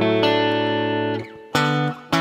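PRS electric guitar playing two-note dyads on the fifth and third strings, each pair let ring. The first dyad rings for about a second and fades, and the next is struck about one and a half seconds in, then cut off near the end.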